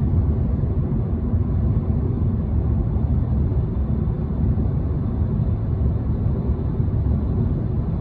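Steady, deep road and tyre noise heard inside the cabin of a 2020 Toyota Corolla cruising at highway speed.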